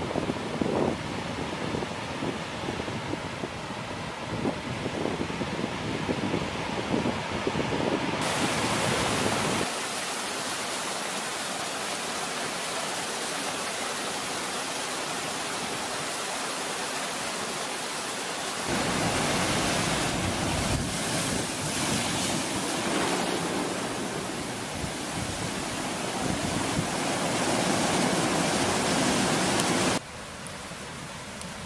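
Ocean surf washing up a sandy beach with wind buffeting the microphone, giving way after about nine seconds to the steady rush of a tall waterfall spilling down a rocky gorge, which grows louder and fuller about two-thirds of the way through.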